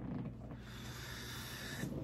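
Quiet room tone with a steady low hum and a soft breathy hiss of a man exhaling through his nose from about half a second in until near the end.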